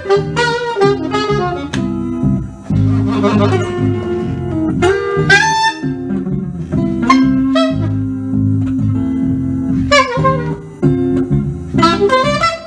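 Live jazz improvisation by saxophone and electric guitar: quick saxophone phrases over held low guitar notes.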